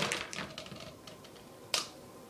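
Faint room noise with a single sharp click near the end. At the start, the tail of a loud scream dies away.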